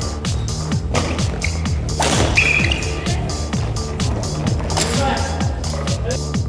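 Background electronic music with a steady beat. Two sharp sounds about one and two seconds in, and a brief high squeak just after the second, come through beneath it.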